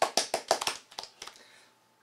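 A few people clapping briefly after a poem is read aloud, a quick patter of claps that fades out within about a second and a half.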